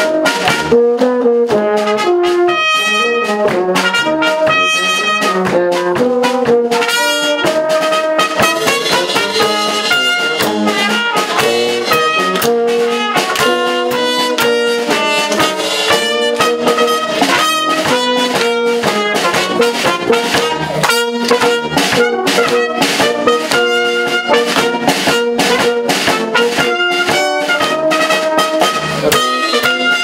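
Small brass band of trumpet, baritone horn and tubas with a drum kit playing a tune with a steady beat.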